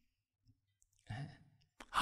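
A mostly quiet pause in speech: about a second in, a short breathy sigh or exhale from a man close to a handheld microphone, followed near the end by a faint mouth click just before he speaks again.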